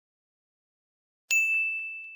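Dead silence, then, about two-thirds of the way in, a single high bell-like ding. The ding is a chime sound effect that starts suddenly and fades out slowly.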